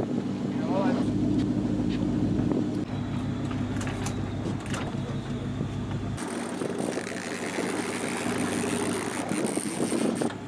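Fishing boat's engine running steadily with a low drone. The low end drops away abruptly about six seconds in.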